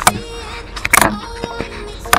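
A camera being swivelled in its dashboard mount inside a moving car: two sharp plastic knocks from the mount, one right at the start and a louder one about halfway, with handling rubs between them, over the car's steady low cabin rumble.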